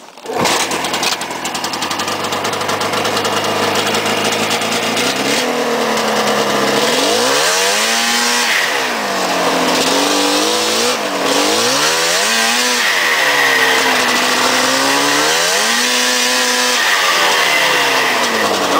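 Yamaha SRV 540 fan-cooled two-stroke snowmobile engine firing up right at the start and running, then revving up and down repeatedly as the sled rides off, its pitch rising and falling.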